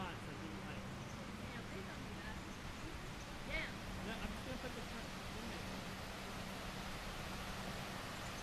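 Faint distant voices over steady outdoor background noise, with a low steady hum underneath.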